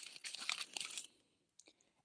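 Crinkling and rustling of medicine packaging, a cardboard tablet box and a foil blister pack, handled and pulled out of a zip pouch. It stops about a second in.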